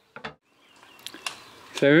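A quiet gap with a few brief, faint clicks over low outdoor background, then a single spoken word near the end.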